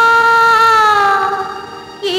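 A female vocalist holds one long sung note in a Tamil film song; it sinks slightly in pitch and fades toward the end.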